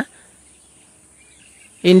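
Faint background noise in a pause between spoken words, with a few faint high chirps in the middle; the voice comes back in just before the end.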